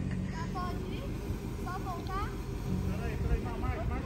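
Low, steady rumble of a convertible Ford Mustang's engine as the car rolls slowly along the street.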